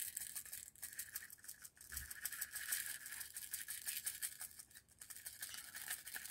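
Faint, dense clicking and rattling of small plastic diamond-painting drills shifting against each other in a plastic tray as it is tipped and handled.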